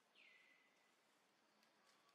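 Near silence with one faint bird call: a whistle that drops in pitch and then holds steady for most of a second.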